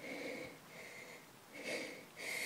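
A person's faint breathing, a soft breath about every second and a half.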